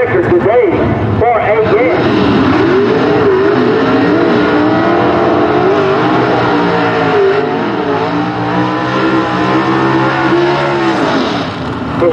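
Drag-racing gasser engines running loud at the starting line, revving up and down as the cars come to the line.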